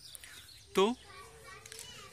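Faint background of distant voices and outdoor ambience, broken by one short word from a man a little under a second in.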